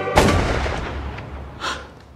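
One loud cinematic impact boom that hits sharply and rumbles away over about a second and a half, followed by a smaller, brighter hit near the end.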